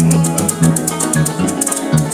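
Live llanera music: a harp and electric bass playing plucked notes over the steady shaking of maracas.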